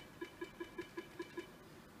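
A desk telephone's speaker giving a run of short identical beeps, about five a second, that stop about a second and a half in, as a call is dialed out.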